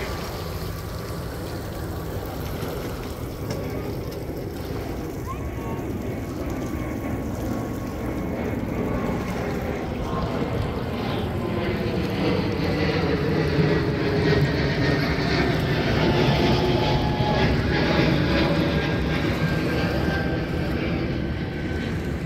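Boat's outboard motor running steadily, getting louder from about halfway through.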